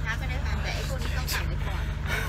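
Steady low drone inside a night train carriage, with quiet voices over it.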